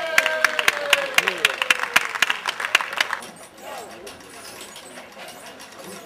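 A small crowd clapping, with voices calling out, for about the first three seconds; then the clapping stops and only faint voices remain.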